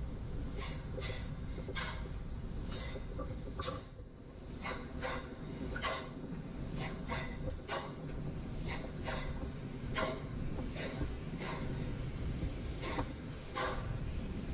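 Work boots crunching on the broken-rock floor of an underground mine drift at a steady walking pace, about two steps a second, with a short pause about four seconds in. A steady low rumble runs underneath.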